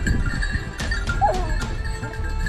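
A hunting dog gives one short yelp, bending up and down in pitch, a little over a second in, with a few sharp clicks just before it.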